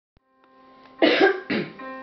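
A keyboard backing track fading in with a sustained chord, and about a second in a girl coughs twice, the coughs much louder than the music.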